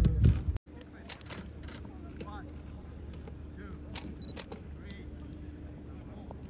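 Outdoor football-pitch training ambience: a few sharp thuds of footballs being kicked and scattered distant voices of players over a faint steady hum. A loud low rumble fills the first half-second, then cuts off abruptly.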